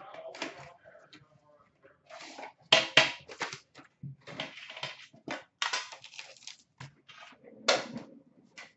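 A sealed Upper Deck Premier hockey card box being unwrapped and opened by hand: crinkling and tearing of its plastic wrap and packaging, with sharp clacks as the box is set down on a glass counter. It comes as an irregular run of short rustles and knocks, loudest about three seconds in and again near the end.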